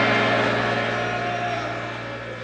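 A sustained keyboard chord held and slowly fading, over the fading noise of the congregation's worship shouts.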